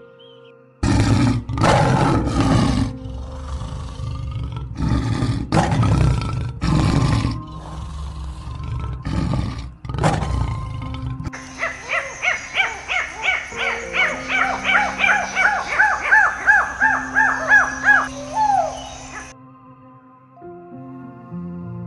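Lion roaring: a series of loud roars and grunts, one after another, through the first half. Then a rapid run of high, repeated downward-sweeping calls from another animal, about two a second, for the rest, all over soft background music.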